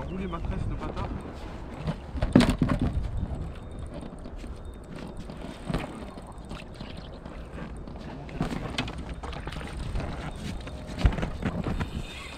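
Low wind rumble on the camera microphone, with a sharp knock about two and a half seconds in and a few lighter ones later, as the camera is handled in an inflatable boat. Brief snatches of muffled voices.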